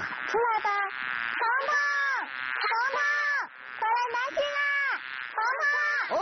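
High-pitched voices calling out a name together in long, drawn-out calls, about six of them one after another.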